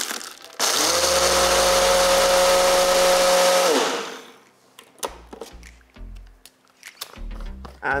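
Single-serve blender blending ice into a smoothie: a brief burst, then the motor runs steadily with a whine for about three seconds and winds down. A few low knocks follow as the blender cup is handled on its base.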